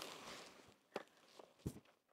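Near silence: a quiet background hiss fades out, then two faint short taps about a second in and again about half a second later.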